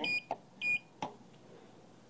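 Schindler Miconic 10 destination-dispatch keypad beeping twice as its keys are pressed: two short electronic tones about half a second apart, each confirming a button press, with light clicks of the keys.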